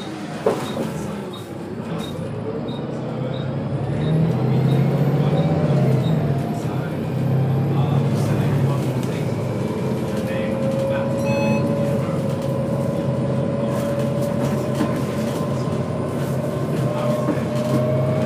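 Volvo B7TL double-decker bus's diesel engine and driveline heard from inside the lower deck while under way, growing louder about four seconds in, with a faint whine slowly rising in pitch later on. A single sharp click near the start.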